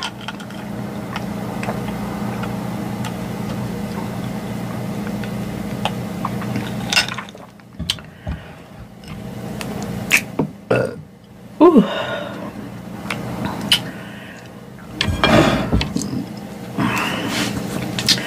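A woman burping after gulping soda: one long, steady burp lasting several seconds, then a shorter burp that falls in pitch and more burps near the end.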